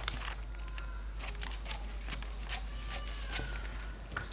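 Large tailor's shears cutting through brown pattern paper: a run of short, irregular snips with the paper rustling.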